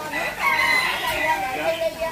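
A rooster crowing once, a long high call lasting about a second, with voices talking around it.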